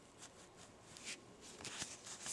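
Faint, soft rustling of cotton yarn and crochet fabric as a yarn needle weaves the yarn tail through the stitches, with a couple of brief scratchy rustles about a second in and near the end.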